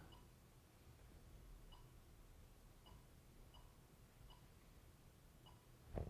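Near silence: room tone with about six faint, short clicks spaced irregularly through it.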